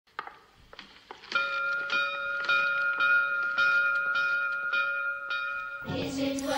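A large bell rung by a pulled rope, struck over and over at a steady pace of nearly two strokes a second from a little over a second in, its ring held between strokes. A few light knocks come before the ringing starts.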